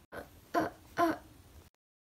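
A person's voice making three short wordless vocal sounds, like throat clearing, about half a second apart; the sound then cuts off to dead silence.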